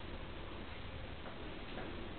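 Quiet room tone: a steady hiss with a few faint, irregular light ticks.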